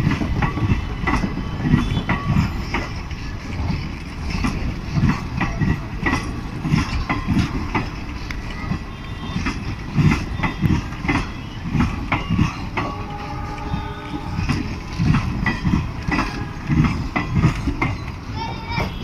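Indian Railways passenger coaches rolling past on a departing express: a steady low rumble with wheels clacking over the rail joints in uneven bursts of clicks.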